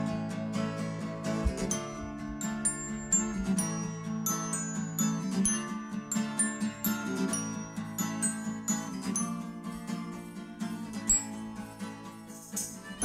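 A band playing a slow song live, the guitar leading: plucked notes over a steady held low tone, with many short high ringing notes on top.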